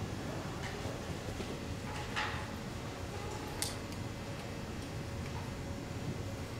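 Quiet concert hall between pieces: low steady room noise with a few faint clicks and knocks, the clearest about two and three and a half seconds in.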